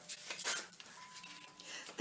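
A deck of tarot cards being shuffled by hand: a quick run of soft card flicks and clicks, thinning out after the first half-second.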